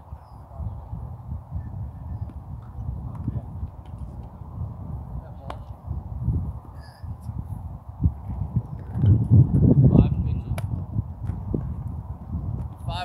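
Wind buffeting an outdoor microphone in uneven gusts, loudest about nine to ten seconds in, with faint distant voices.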